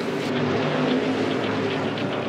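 NASCAR stock car's V8 engine running on track, holding a steady note.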